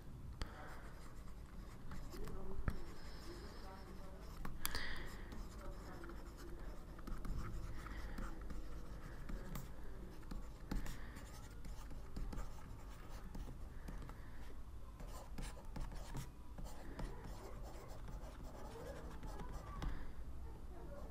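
Stylus writing on a tablet: faint, scratchy handwriting strokes with a few sharper taps, over a steady low hum.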